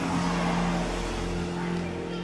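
Soft held chord of background music under a pause in speech, with a faint haze of room noise, easing slightly quieter.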